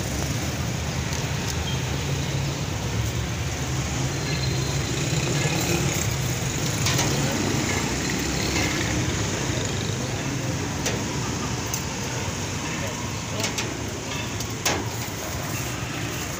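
Busy street ambience: a steady traffic rumble with indistinct voices in the background, and a few sharp clicks, the loudest near the end.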